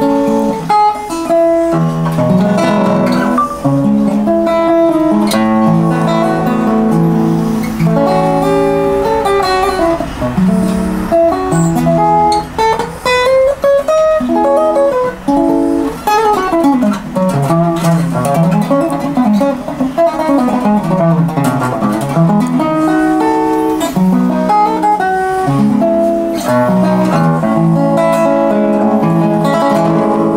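A 1930s Regal wood-bodied resonator guitar with a Dopyera Brothers cone, fingerpicked in a continuous improvised passage, with notes sliding up and down the neck in the middle.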